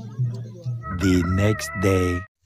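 A rooster crowing, starting about a second in: a loud pitched call lasting about a second and a half, laid in as a sound effect marking the next morning.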